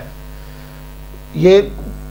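Steady electrical mains hum in the recording, one unchanging low hum, with a single short spoken word about one and a half seconds in.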